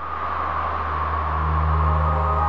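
Logo-reveal sound effect: a swelling whoosh over a deep, steady bass rumble that grows louder, with a few sustained musical tones starting to come in near the end.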